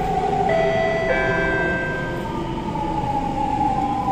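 Siemens C651 metro train braking into a station, heard from inside the carriage: the traction motors' whine sinks slowly in pitch over the running rumble. About half a second in, a cluster of steady, high inverter tones cuts in, then fades out by around two seconds.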